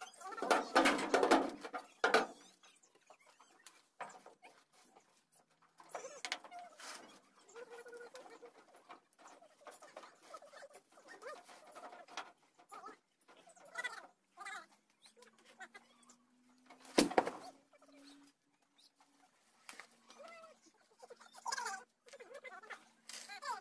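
Large paper reels being rolled across a truck's bed and dropped to the ground. There is a rumbling roll ending in a thud about two seconds in, scattered knocks, and a second heavy thud about seventeen seconds in.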